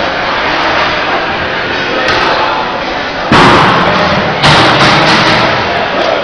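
Two loud bangs a little over a second apart, each ringing out through a large hall, over a steady background of crowd voices and commotion.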